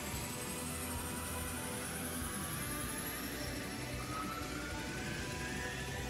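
Cartoon power-up sound effect: several high whines rising slowly and steadily in pitch, like an energy blast charging, over background music.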